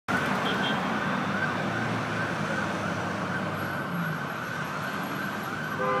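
A vehicle siren warbling in a fast, even repeat, over the low, steady running of a heavy truck's engine.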